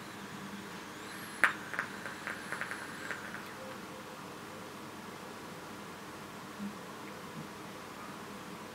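Vaping on a dripping atomizer with a 0.5-ohm dual coil: a click about a second in, then about two seconds of faint crackling and popping as e-liquid sizzles on the fired coils, with a faint high whine of air drawn through the atomizer. Quiet room tone follows.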